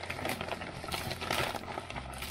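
Paper and plastic packaging crinkling and rustling in irregular bursts as hands pull at a parcel's wrapping.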